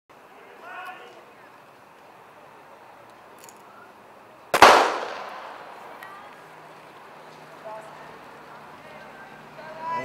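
A starter's gun fired once to start the race: a single sharp crack about halfway through, with a tail that dies away over the following second or so.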